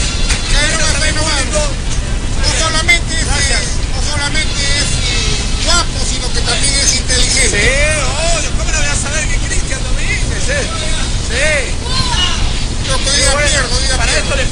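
Voices talking over background music.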